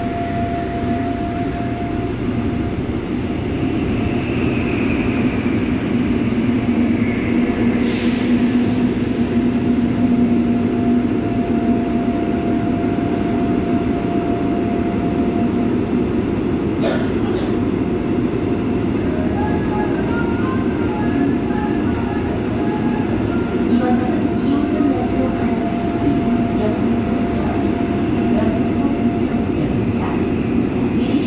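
Seoul Line 5 subway train (W503, PMSM traction motors) gathering speed out of a station and running through a tunnel, heard from inside the car: loud, steady running noise with a steady hum, growing louder over the first several seconds, and two sharp clicks about eight and seventeen seconds in.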